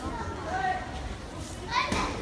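Children chattering in a large hall, with one short, sharp, high shout near the end.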